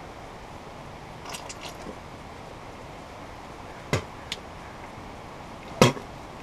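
A few sharp clicks from handling a plastic valve and tubing: two small ones about four seconds in and a louder one near the end, over a quiet background with a faint brief hiss early on.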